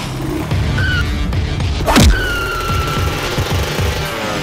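Action-film background score with a low driving pulse, and one loud whoosh-and-hit sound effect about halfway through that sweeps down in pitch, timed to a punch being thrown.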